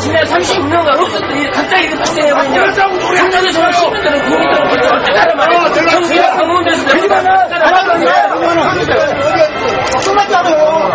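Loud, overlapping talk: several people speaking over one another at close range, with no single voice standing out.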